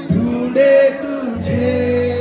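Live male singer performing a Hindi song with instrumental backing, amplified through a PA system; sustained sung notes with a short break between phrases.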